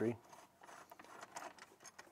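Faint handling noise: a few small clicks and rubs as hands and a small pointed tool work at a plastic engine-bay cover and its push-in clip.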